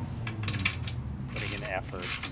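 Ratchet wrench clicking as a bench bolt is tightened, with a few sharp clicks within the first second.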